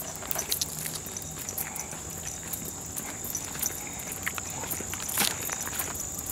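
Footsteps on a gravel trail, an uneven run of short crunches while walking, over a steady high-pitched trill of insects.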